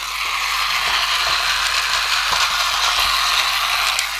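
1984 Tomy Dingbot toy robot's battery-powered motor and gear train running steadily with an even, loud whirring gear noise just after being switched on. The freshly cleaned and greased mechanism is working again.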